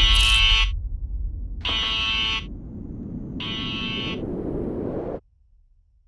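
An electronic buzzer sounds three times, each buzz about two-thirds of a second long and a little under two seconds apart, over a low noise. Everything cuts off suddenly about five seconds in.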